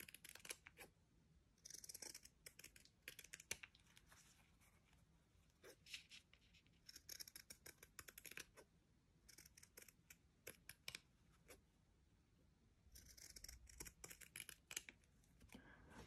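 Quiet snips of scissors trimming the edge of a round piece of fabric. The cuts come in several short runs of quick snips, with pauses between them.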